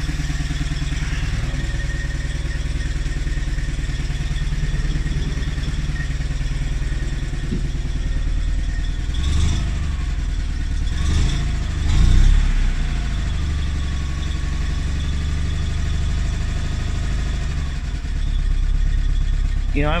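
Invacar Model 70's air-cooled flat-twin engine running at a fast idle, held there by a slightly sticky throttle. It swells up briefly three times, between about nine and thirteen seconds in.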